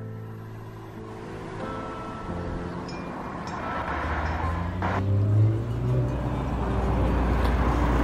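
Soft background music with held notes fades under outdoor road noise: a car engine running nearby, growing louder toward the end.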